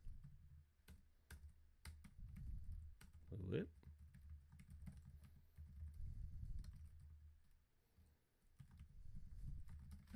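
Faint computer keyboard typing: irregular, scattered key clicks as a line of code is entered, over a low background hum.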